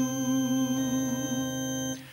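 A man's voice holds one long sung note of a hymn with a slight vibrato, over sustained electric keyboard chords; the note and chord end near the end.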